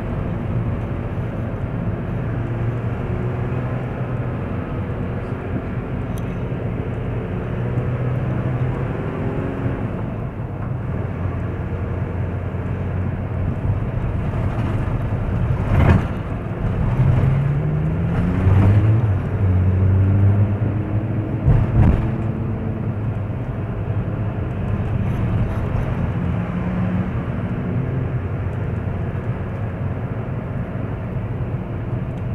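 Car engine and road noise from inside a moving car: a steady engine hum whose pitch rises as the car speeds up just past the middle. Two sharp knocks, the loudest sounds, come about halfway through and again about six seconds later.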